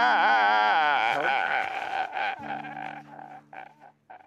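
A man wailing in loud crying, his voice wavering in pitch, then breaking into short sobbing gasps that grow fainter and die away near the end. A low steady hum runs underneath.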